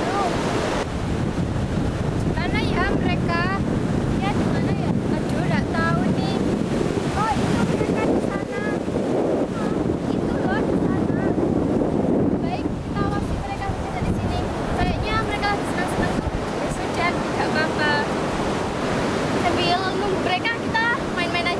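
Wind buffeting the camera microphone in a steady, heavy rumble, with girls' voices talking underneath it at times.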